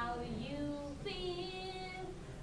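A young woman's voice singing a slow ballad, holding two long notes, the second higher than the first.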